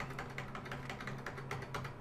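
Plus key on a computer keyboard's number pad tapped over and over, a rapid run of light clicks at several a second, over a faint steady low hum.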